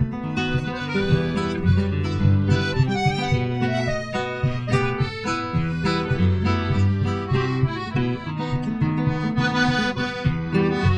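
Nylon-string classical guitar and piano accordion playing an instrumental passage together, a sea-shanty-style tune with sustained accordion chords over plucked guitar, without singing.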